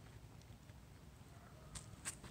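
Near silence: faint low background hum, with a faint tick near the end.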